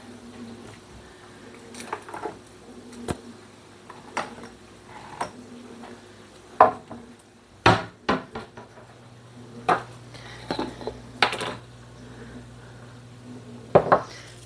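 Kitchen clatter: about ten scattered clinks and knocks of dishes and containers as someone rummages through the kitchen for salt and pepper. A low steady hum comes in about halfway through.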